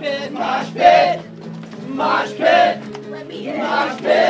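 Live folk-punk song: a guitar holding steady chords under loud shouted vocals that come in short bursts about every second, with crowd voices joining in.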